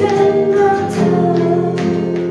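A woman singing a held, gently wavering melody while strumming an acoustic guitar, with a new chord strummed about halfway through.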